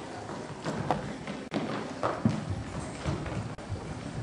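Irregular footsteps and knocks on a stage floor, about one or two a second, as performers shuffle and move around.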